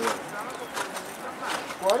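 Quiet men's voices talking in the background, with a few faint clicks.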